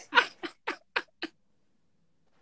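A man laughing hard in a quick run of short 'ha' bursts, about six in just over a second, then stopping.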